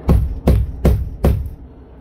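A fist knocking four times, evenly spaced, on the 2023 Taxa Cricket camper's wall panel of foam wrapped in aluminum. The knocks show the wall is solid.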